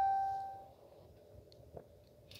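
A 2016 Ram 2500's dashboard chime after the ignition is switched on: a single bell-like ding dying away over the first second. After it the cab is quiet apart from a faint click.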